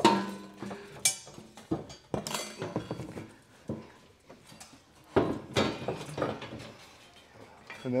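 A steel trailer hitch being worked into position under a vehicle, knocking and clinking against the frame and exhaust: several sharp metal clanks, the loudest at the very start and about a second in, with quieter handling noise between.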